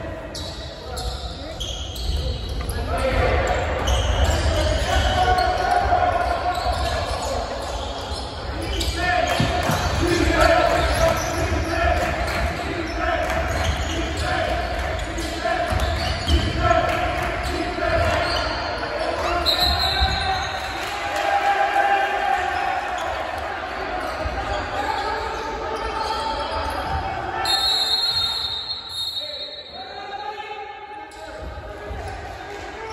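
Basketball dribbling on a hardwood gym floor during live play, with players' sneakers and indistinct shouting voices, all echoing in a large gymnasium.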